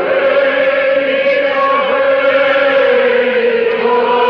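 A choir of voices singing a slow chant-like hymn in long, held notes.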